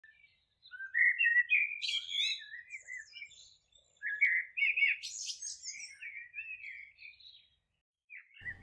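A bird singing two long warbling phrases of quick, varied chirps, the first starting about a second in and the second about four seconds in, with a short gap between them.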